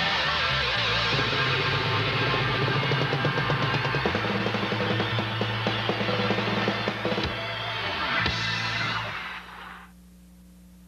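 Hard rock song ending, played by electric guitar, bass, keyboards and drum kit, with a run of drum hits in the second half. The last chord dies away about nine seconds in.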